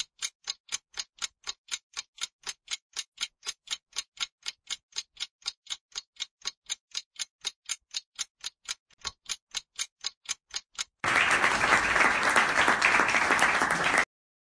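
Quiz countdown timer ticking like a clock, about four even ticks a second. About eleven seconds in the ticking gives way to a recorded burst of applause that cuts off suddenly three seconds later, marking time up for the answer.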